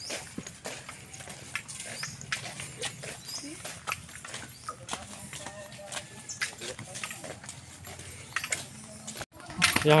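Footsteps of several people walking in flip-flops on a concrete path: an irregular run of light slaps and clicks.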